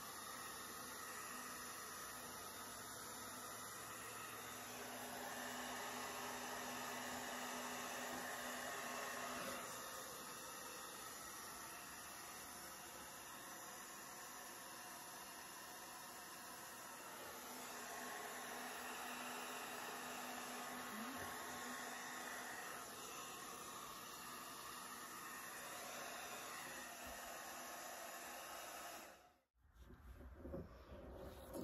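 Hair dryer running, blowing wet acrylic paint outward across a canvas for a bloom. A steady rush of air with a faint motor hum grows louder and softer as it moves, and cuts off suddenly near the end.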